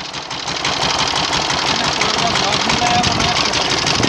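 Two-wheel power tiller's engine running with a fast, even chugging. It grows louder just after the start and then holds steady.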